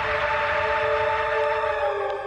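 Dramatic sound effect: a loud rushing whoosh with a chord of a few steady held tones that slide slightly down near the end.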